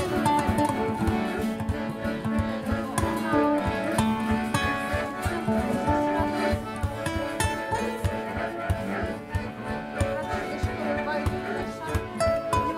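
Acoustic folk band playing an instrumental passage: acoustic guitar and accordion over a low plucked string line and a steady hand-drummed beat.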